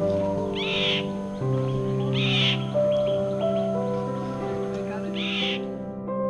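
An Indian roller gives three short, harsh calls, about a second in, two seconds in and near the end, over background music of sustained keyboard notes.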